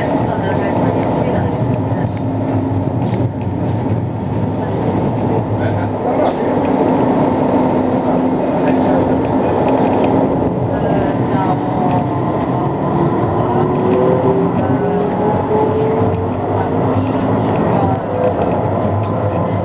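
Tram running, heard from inside the passenger cabin: a steady running noise, with a motor whine that rises in pitch in the second half as the tram gathers speed.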